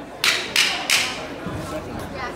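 A quick flurry of three punches traded between two amateur boxers: three sharp, hissing bursts about a third of a second apart in the first second, over the chatter of the crowd.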